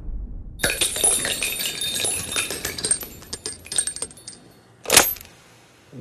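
Loose metal bullet cartridges clinking and clattering against one another on a wooden tabletop in a quick, irregular run of small metallic clicks, ending in one louder sharp metallic hit about five seconds in.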